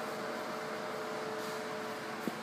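Steady ventilation hum, with two faint steady tones over a even hiss.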